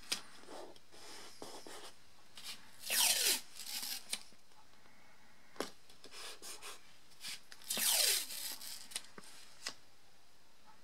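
Strips of artist's tape pulled off the roll twice, each a short rasping rip that falls in pitch, with fingers rubbing and pressing the tape down onto paper and glass and small clicks in between.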